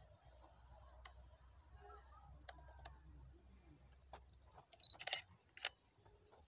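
Steady high-pitched buzz of crickets, with scattered small clicks from handling a DSLR camera's buttons and controls. The loudest clicks come in a quick cluster about five seconds in, just after a short high beep.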